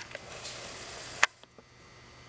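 Soft rustling noise, cut off by a single sharp click a little over a second in, followed by two faint ticks.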